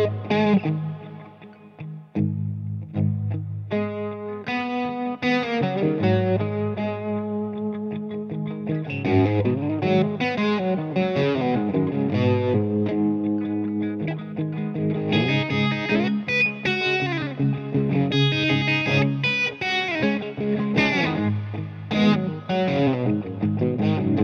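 Left-handed Gibson SG electric guitar with Burstbucker pickups, played through a Headrush modeling pedalboard: slow-blues lead lines with string bends over sustained low notes.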